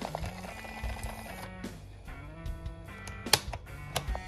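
Music playing on a portable cassette player, broken by sharp plastic clicks as its piano-style control keys are pressed. The loudest click comes a little past three seconds in, with others near the start and end.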